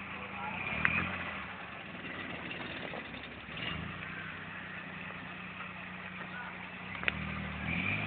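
Maruti 800's small three-cylinder petrol engine idling with a steady low hum, with a sharp click about a second in and another near the end.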